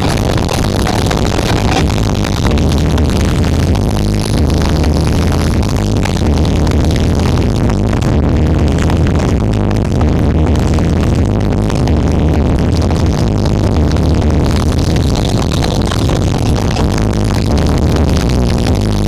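Electronic dance music played at high volume through a large outdoor sound-system rig during a sound check, with heavy pulsing bass over the mix.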